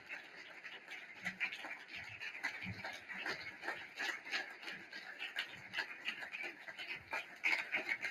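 Audience applauding, a dense patter of hand claps that grows a little louder near the end.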